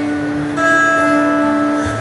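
Live acoustic band music: acoustic guitars strumming, with a new chord struck about half a second in.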